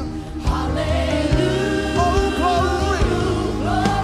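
Gospel praise team singing in harmony over a live band with keyboards and drums. The voices drop out for a moment at the very start and come back in within half a second.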